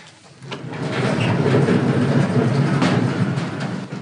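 A vehicle passing by: a heavy rumble that swells up about half a second in, holds loud for a couple of seconds, and fades away near the end.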